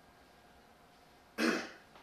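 A single sharp cough about a second and a half in, over quiet room tone.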